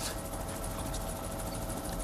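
Steady helicopter cabin noise, an even drone of engine and rotor with a faint steady hum.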